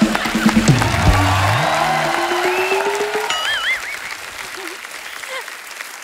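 Studio audience applauding over music, the applause loudest in the first few seconds and fading away toward the end.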